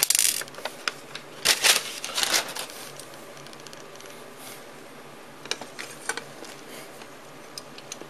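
A paper hardware-store bag rustling as it is handled and searched, with small metal nuts clinking inside, in two loud bursts over the first couple of seconds; a few light clicks of small hardware follow later on.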